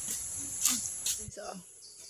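Steady high-pitched insect chorus, with two faint clicks about halfway through.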